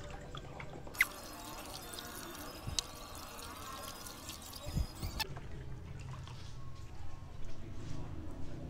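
Hydroponic nutrient solution being stirred by hand in a large tub to mix in pH Down, a soft swishing and trickling of water that stops about five seconds in. A sharp click about a second in and a low thud shortly before the stirring stops.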